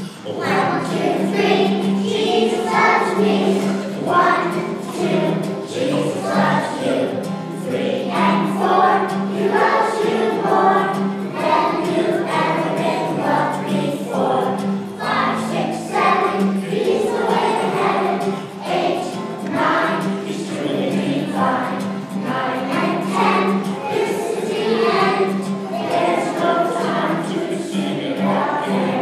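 A group of preschool children singing together in unison, with a steady low accompanying note underneath.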